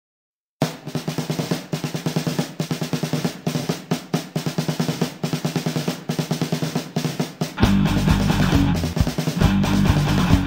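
Silence, then a rock song starts with a fast snare-drum intro of several strokes a second. Near the end the rest of the band comes in loud, with heavy bass and distorted guitar.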